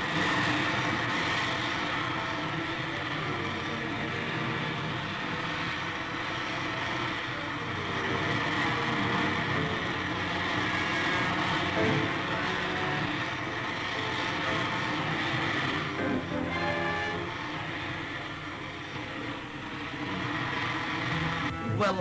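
A film sound effect for a rocket ship in flight: a loud, steady rushing engine noise that starts suddenly and keeps going.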